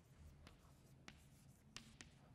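Chalk writing on a chalkboard, faint: three light taps and scratches as the words are written.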